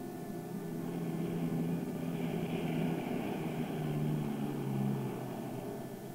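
Four turboprop engines of a DC-130 Hercules drone carrier droning through a takeoff and climb-out. The sound swells to its loudest in the middle and eases off near the end as the aircraft passes.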